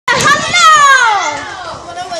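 A boy's voice giving one long, high call that slides down in pitch and fades near the end.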